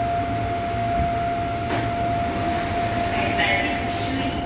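Seoul Subway Line 5 train car coming to a stop at a station: a steady low rumble with a constant thin whine, a couple of faint clicks, then a short hiss near the end as the doors open.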